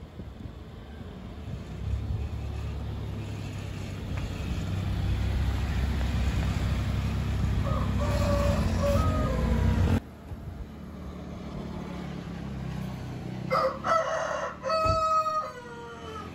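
A vehicle's low rumble builds over the first ten seconds and cuts off abruptly. A rooster crows, faintly about eight seconds in and louder near the end, the last crow ending in a falling slide. There is a single low thump just before the end.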